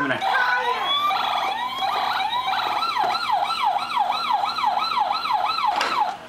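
Toy SWAT truck's electronic siren sound effect from its small speaker: a few other electronic tones first, then a rapid wailing siren rising and falling about three times a second, cutting off at the end.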